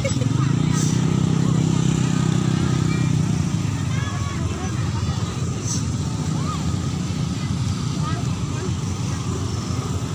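An engine running close by, loudest in the first three seconds and then fading, over the chatter of a crowd.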